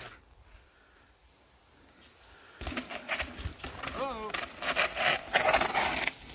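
Near silence for about two and a half seconds, then a mountain bike rolling down a granite rock slab: knobby tyres on rock and the bike's chain and parts clattering in short irregular clicks, with a brief wavering voice-like sound about four seconds in.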